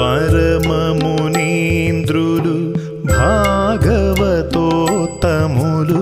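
Carnatic devotional song: a voice sings long, sliding ornamented phrases over a steady drone, with light percussion strokes.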